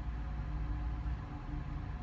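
Semi truck's diesel engine idling with a steady low hum, heard from inside the cab.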